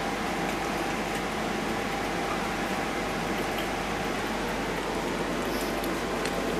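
Baby hedgehogs lapping and slurping milk from a plastic dish: a steady, dense, wet crackle of many small licks, with a faint steady hum underneath.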